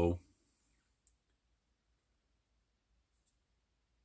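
A spoken word ends at the start. Then there are two faint, short clicks from the small parts of an RC shock being handled, as the cap is set onto the oil-filled shock body. The first click comes about a second in, and a fainter one just after three seconds.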